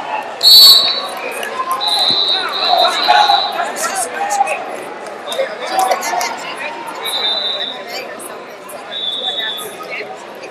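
Referee whistle blasts in a large, echoing wrestling hall: a loud one about half a second in as the period ends, then several shorter, fainter whistles from other mats, over a murmur of voices and scattered thuds.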